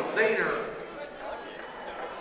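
Gymnasium crowd voices after a basket, with a basketball bouncing on the hardwood court. The voices are loudest in the first half second, then settle lower.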